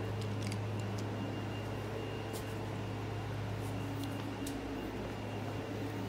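Steady low hum of room noise with a faint high-pitched whine and a few faint, light clicks.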